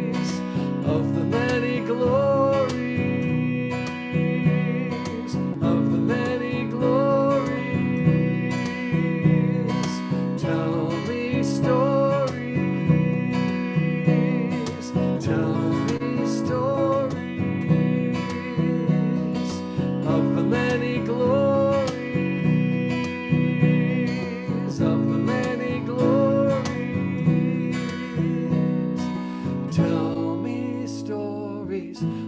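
A song with acoustic guitar strummed in a steady rhythm and a wavering melody line carried over the chords, the phrase returning about every two seconds.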